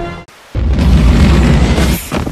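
A loud explosion-like boom with a deep rumble. It starts about half a second in and cuts off suddenly near the end.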